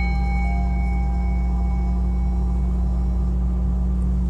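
Hammered brass singing bowl ringing out after being struck, its clear tones fading away over about three seconds. Underneath runs a steady low drone of annoying outside noise, which sounds like a spaceship.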